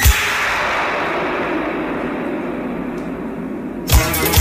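Film sound effect of glass shattering: a sudden crash, then a long noisy tail that slowly fades while the music drops out. The music comes back with a loud hit just before the end.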